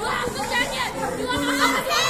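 Several women shouting at once in agitated, high-pitched, overlapping voices, with no clear words.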